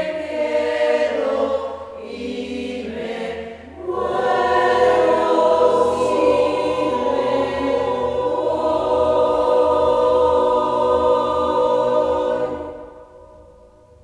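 Mixed-voice choir singing a cappella in close harmony; after a brief break in the phrase about three and a half seconds in, it holds one long chord for about eight seconds, which is released a second or so before the end and dies away in the room.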